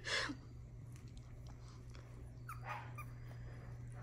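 Very young miniature schnauzer puppies giving faint whimpers and squeaks now and then.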